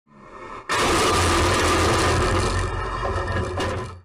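Road crash: a sudden loud crashing noise just under a second in, with a steady low hum beneath it, holding for about two seconds and then fading.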